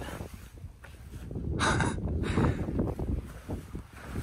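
Wind rumbling on a handheld microphone and footsteps on a concrete driveway, with a short hissing sound about a second and a half in.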